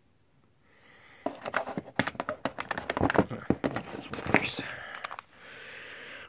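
Handling noise as cardboard-wrapped firework cakes are shifted and lifted out of a cardboard assortment box: after about a second of quiet, a quick run of knocks, clicks and rustles that settles into a soft rustle near the end.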